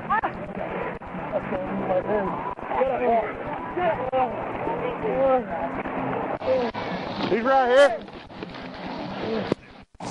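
Muffled men's voices talking and shouting, with one loud wavering shout about eight seconds in.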